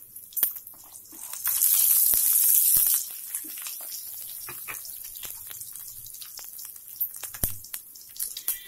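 Hot oil sizzling and crackling in a non-stick frying pan as a tempering of mustard seeds, cumin, chana and urad dal, garlic and dried red chillies fries, with scattered sharp pops of seeds. About a second and a half in, a louder hiss swells for about a second and a half, then settles back to a low crackle.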